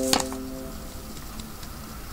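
A single sharp click just after the start, over a held tone that fades out within the first second; then quiet room tone.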